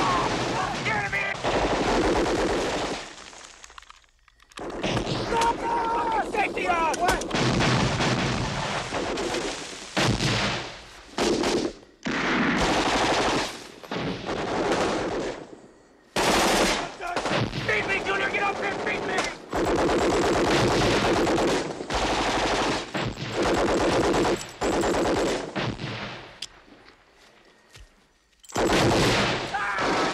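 Heavy automatic gunfire in long, dense bursts, with brief lulls about four and sixteen seconds in and a longer lull near the end.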